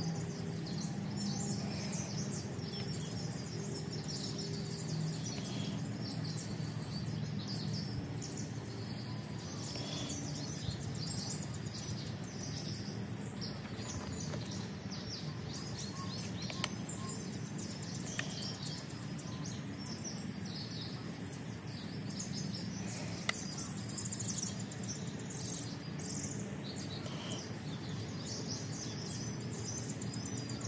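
Outdoor background of small birds chirping and calling on and off, over a steady low hum, with a few faint clicks.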